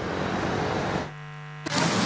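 Steady outdoor background noise, broken about a second in by roughly half a second of low electrical hum. The noise then returns, with traffic in it, as the broadcast switches to a recorded street report.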